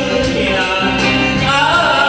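A man singing into an amplified microphone over band accompaniment with a steady drum beat.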